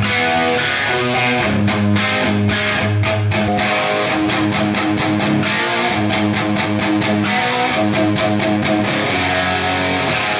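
Electric guitar riff played through a vintage Marshall head into a Marshall 1982A 4x12 cabinet with Celestion G12H30 55Hz speakers, then, a few seconds in, the same riff through a 1960A 4x12 with Celestion G12M25 75Hz speakers. The 1982A sounds colder, more scooped and punchier; the 1960A is brighter and boxier, with more low end.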